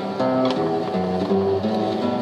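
Nylon-string classical guitar playing a short run of plucked notes, with the notes changing every third to half second, between sung lines.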